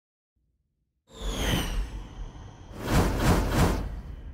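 Logo-intro sound effect that starts about a second in: a swoosh with falling whistling tones, then a louder whooshing rush with three quick pulses near the end, tailing off.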